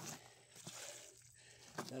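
Faint footsteps on loose gravel and sand, with a man starting to speak near the end.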